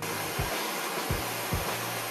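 Handheld gas blow torch burning with a steady hiss, over background music with a regular beat.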